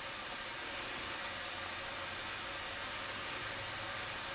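Steady hiss with a faint low hum: the recording's background noise, with no other sound.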